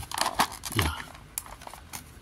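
Clear plastic packaging crinkling and clicking as it is pressed into place over a diecast model car in its plastic tray. The crackle is densest in the first second, then a few single clicks follow.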